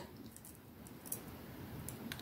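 Faint small clicks and handling noise of jewellery pliers bending silver wire into a closed loop, over quiet room tone.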